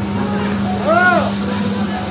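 A steady low hum over a noisy crowd background, with one voice calling out a single note that rises and falls about a second in.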